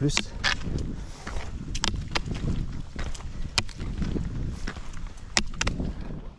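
Rollerski wheels rolling on asphalt with a steady low rumble, and the ski poles' tips striking the tarmac in sharp clicks, the strongest every couple of seconds with each push.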